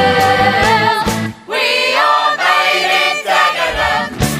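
Musical-theatre song: a group of voices sings over a band. About a second and a half in the band drops out and the voices carry on alone in sustained, shifting chords.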